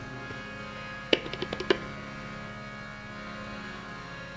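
Harmonium holding a steady sustained chord, with a quick run of about six tabla strokes a little over a second in.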